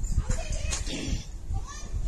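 Saree cloth being handled and moved, with rustling and repeated low bumps, and faint speech in the background.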